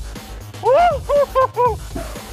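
A man laughing, a quick run of about five pitched 'ha' bursts starting about half a second in, over a steady low rumble.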